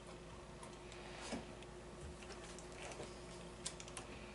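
Faint, scattered clicks and light knocks of wooden beehive frames being handled and a pneumatic stapler being set against the wood, a few close together near the end, over a faint steady hum.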